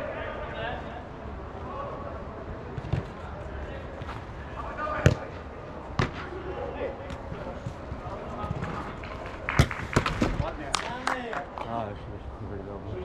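Football being kicked: a few sharp thuds about five and six seconds in, and a quick cluster of them near the end, amid players calling out across the pitch.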